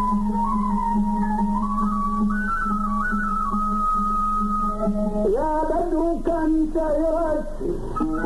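Iraqi maqam Dasht performance: a sustained melodic instrument plays a slow line stepping upward over a steady low drone, then about five seconds in a voice enters singing bending phrases.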